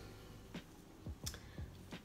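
A few faint, sharp clicks over quiet room tone, the clearest a little past a second in.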